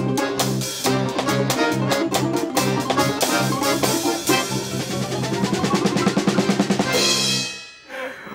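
Russian folk-instrument ensemble of domras, balalaikas, accordion and drum kit playing the last bars of a piece. A fast, driving strummed rhythm with drums gives way about four seconds in to a long held tremolo chord with a rising run under it. It ends on a bright final hit and stops about seven and a half seconds in.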